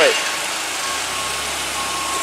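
Propane-fuelled Yale forklift's engine running steadily at low revs close by, with a faint steady whine over it.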